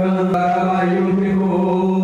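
A man's voice holding one long, steady sung note over a microphone and loudspeakers.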